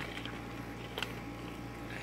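Faint rustling and a few small clicks of plastic parts bags being handled, one click a little sharper about a second in, over a steady low hum.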